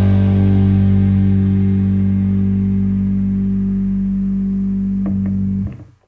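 Rock band's last chord ringing out on bass and guitar, the higher notes fading away. A few small string noises come about five seconds in, then the sound cuts off abruptly near the end: the close of a track.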